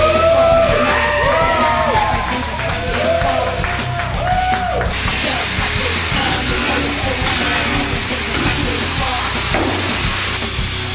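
Loud heavy rock music playing, with voices yelling over it during the first half.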